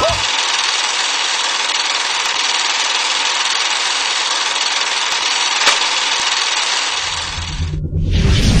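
Steady hiss of old-film static with a few faint clicks. It cuts off suddenly just before the end as a low rumble comes in.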